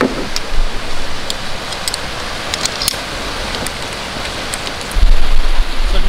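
Steady rushing outdoor noise, with a few light metallic clicks of carabiners and a pulley being clipped together. A low rumble comes in near the end.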